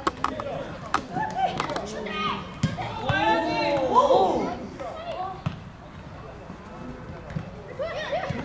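Voices shouting calls on a youth football pitch, loudest a few seconds in, with a few short sharp thuds of a football being kicked.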